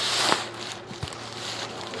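Thin black plastic bag rustling as a cardboard box is pulled up out of it, then quieter handling with a single light knock about a second in.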